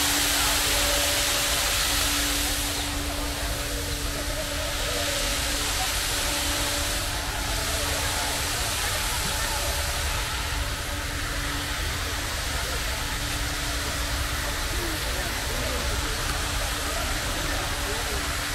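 Ornamental fountain jets spraying and falling into a pool: a steady hiss of falling water, a little louder in the first few seconds, with people talking in the background.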